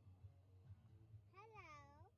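A cat meowing once, faintly: a single call that rises and then falls in pitch, starting about a second and a half in, over a low background hum.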